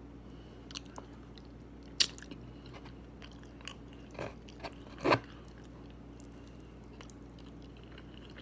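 Close-up eating sounds of a person working on rotisserie chicken: scattered wet mouth clicks and chewing, with the sharpest click about two seconds in and the loudest about five seconds in.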